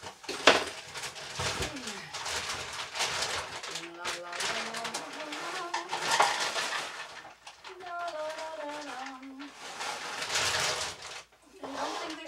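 Household clutter rustling and knocking as it is rummaged through, with a sharp knock about half a second in. A woman hums a few wordless notes midway and again later.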